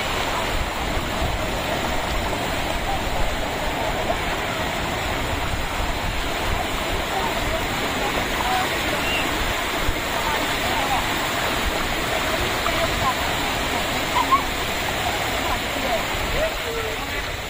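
Shallow sea surf washing steadily over sand, a continuous rushing wash of water, with indistinct voices in the background.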